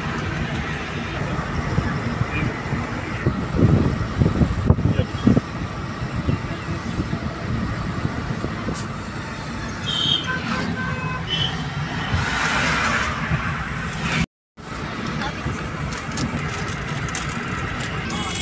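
Steady road and engine noise heard inside a car cabin while driving on a highway. The sound cuts out for a moment about two-thirds of the way through.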